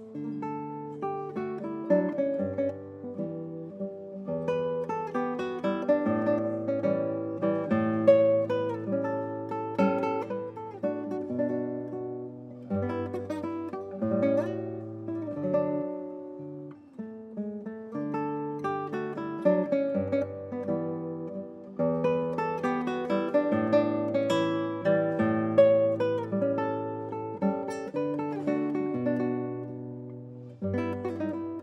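Solo classical guitar played fingerstyle, with a bass line under arpeggiated chords and melody notes, dipping briefly about halfway through.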